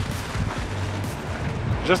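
Wind buffeting the microphone in an irregular low rumble, mixed with the road noise of a car driving up close. A short laugh comes near the end.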